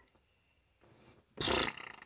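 A person making a short, loud, rough vocal noise, not words, about a second and a half in, trailing off in a rattle.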